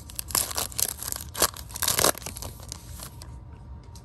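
Plastic trading-card pack wrapper being torn open and crinkled by hand, in a run of quick rips over about two seconds, then quieter handling.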